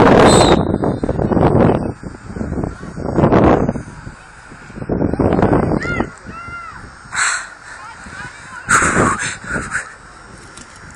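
Spectators shouting loudly from the stands in a series of short yells, the loudest right at the start, then more at intervals through the game.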